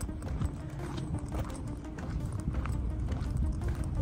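Footsteps on pavement, a run of irregular knocks and low thumps from someone walking with a handheld camera, over background music.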